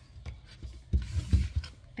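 A sheet of book-covering paper rustling as it is handled on a table, with a few low knocks in the second half.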